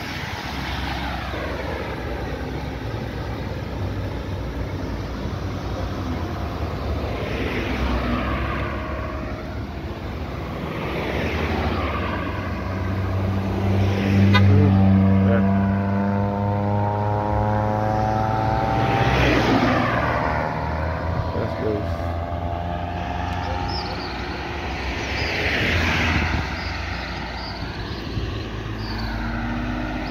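Road traffic passing close by, one vehicle after another sweeping past. About halfway through, a louder engine goes by with its note falling in pitch as it passes.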